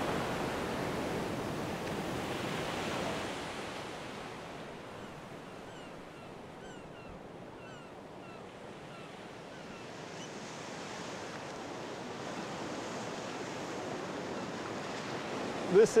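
Ocean surf washing in as a steady rush of noise. It fades down through the middle and swells again toward the end.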